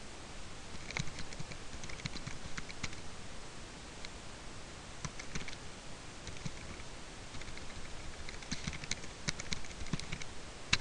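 Computer keyboard being typed on in a few short runs of key clicks, with pauses between.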